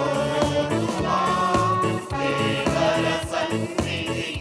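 Devotional choral music: a choir singing a hymn over instrumental backing with a steady beat.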